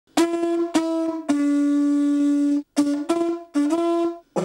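A conch shell blown as a horn, with a buzzy, brassy tone. It plays a few short, sharply attacked notes, then one long, slightly lower note of about a second. After a short break come more short notes, the last stepping up a little in pitch.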